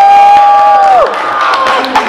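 A person's long "woo!" whoop of cheering, rising, then held on one high pitch and dropping off about a second in, followed by a crowd cheering.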